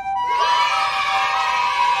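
A group of children cheering, many voices at once, starting about a third of a second in, over background music.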